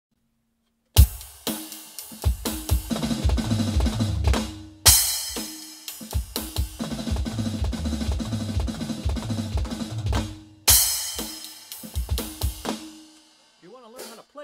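Roland electronic drum kit played in three loud phrases of fast 16th-note triplet fills that start with a flam and end on two bass-drum strokes (sticking RLRRKK). A crash cymbal opens each phrase, about a second in, near five seconds and near eleven seconds. The last hits die away near the end.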